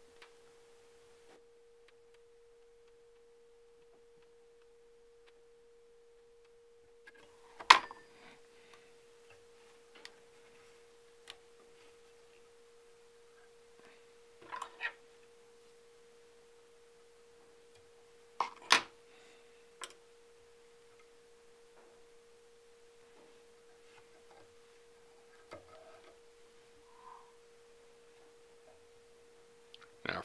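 Small handling sounds from fly tying at a vise: a few sharp clicks, the loudest about 8 and 19 seconds in, with softer clicks and rustles between. A steady faint hum runs underneath throughout.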